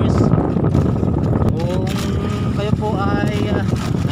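Steady low rumble of a bamboo-outrigger fishing boat under way at sea, with wind buffeting the microphone. A man starts talking over it about one and a half seconds in.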